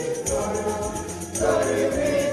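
Church choir singing a gospel-style hymn in harmony, over a low bass line and high percussion keeping a steady beat.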